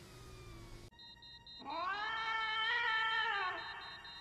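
A cat's single long meow, starting about halfway in and lasting about two seconds, rising in pitch at the start and falling away at the end.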